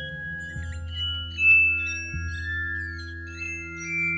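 Ambient music of sustained, chime-like tones at several pitches over a steady low drone, with a brighter struck note about a second and a half in.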